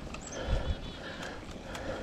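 Mountain bike rolling along a dirt trail: tyre noise on the ground with a couple of low thumps about half a second in from bumps in the trail, and scattered clicks and rattles from the bike.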